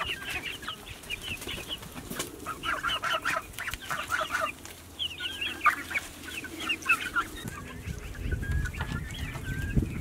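Chickens and a young goose calling while they peck at fresh greens: a run of quick, high, chirping calls, then a thinner wavering call from about six seconds in. A low rumble comes in near the end.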